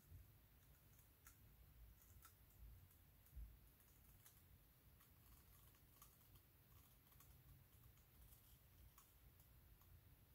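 Near silence: faint room hum with scattered faint clicks, roughly one a second.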